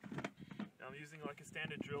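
A man talking, with a few short clicks near the start.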